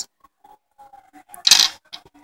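Small glass gems and a stone being shifted by hand on a hard countertop: faint scattered clicks, then one short, louder scrape-and-clink about a second and a half in.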